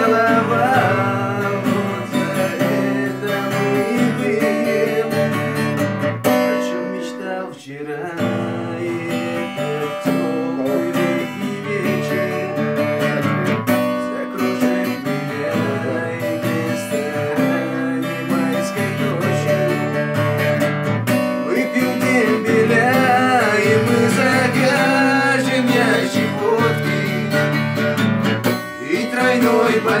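Music: acoustic guitar with a singing voice, dipping briefly about seven seconds in.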